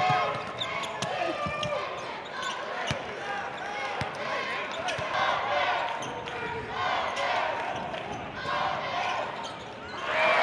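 Basketball bouncing on a hardwood court, a scatter of sharp knocks, over the voices of players and crowd in a gymnasium.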